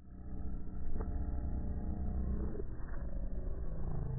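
Logo audio slowed right down and muffled into a deep, steady rumble, with nothing in the upper range and a click about a second in. It starts suddenly after a moment of silence.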